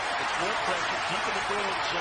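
Steady din of a hockey arena crowd, many voices blending into an even roar, with fainter men's voices underneath.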